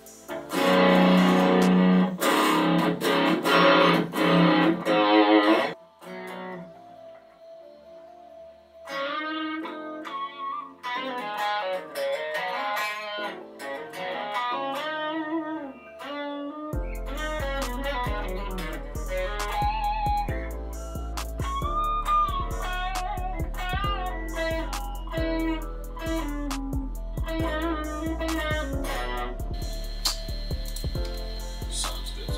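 Freshly restrung electric guitar played to test the new strings: loud strummed chords for about five seconds, a short quiet gap, then single-note melodic lines with bends. A bit past halfway a steady low rumble comes in underneath and stays.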